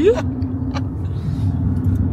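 Steady low rumble of a car on the move, heard from inside the cabin: engine and road noise with a constant hum.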